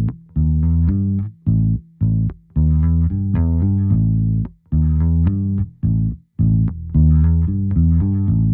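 Soloed playback of an electric bass guitar (G&L) recorded direct, played through GarageBand's simulated Direct Box, which is meant to warm up and round out the tone. A bass line of separate, held notes in short phrases with brief breaks between them.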